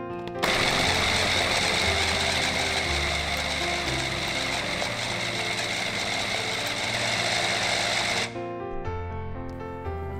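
Electric mini chopper running steadily as its blade minces raw chicken pieces, starting about half a second in and cutting off about eight seconds in.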